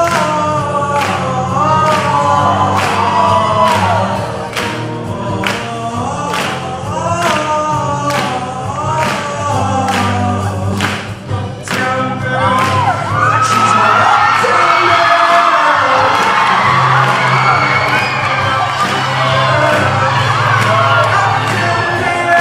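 Choir singing with band accompaniment over a steady drum beat. About thirteen seconds in the beat drops out and a dense wash of many voices takes over.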